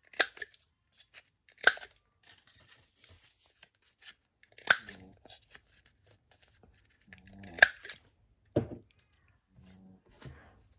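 Handheld corner rounder punch snapping through folded paper tabs: four sharp clacks a few seconds apart, with paper rustling between them and a duller thump near the end.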